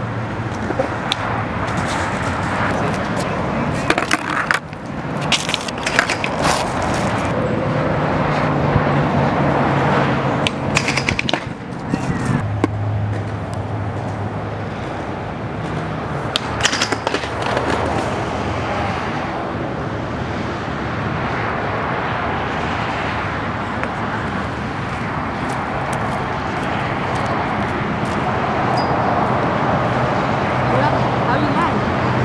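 Skateboard wheels rolling on concrete, with sharp clacks and knocks of the board several times, clustered around four to seven seconds in, eleven to twelve seconds in and sixteen to seventeen seconds in. A low steady hum comes and goes underneath.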